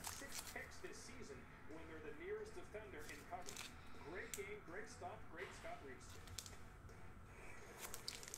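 Faint crinkling and clicking of a clear plastic sleeve around a hard plastic graded-card slab being handled, with faint talking in the background.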